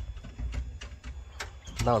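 Quiet outdoor ambience picked up by a handheld phone mic: a low rumble with a few faint clicks. A man starts speaking near the end.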